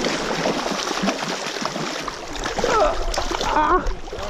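A hooked trout thrashing and splashing at the water's surface as it is played. A person's voice calls out over the splashing in the last second or so.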